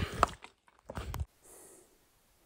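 A man's voice finishing a remark, then a short muffled sound with a few clicks about a second in and a faint high hiss.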